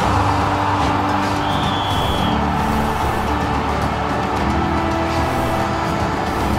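Background music for an animated outro, with a rushing whoosh that swells in at the start and fades over a few seconds, and a brief high held tone about a second and a half in.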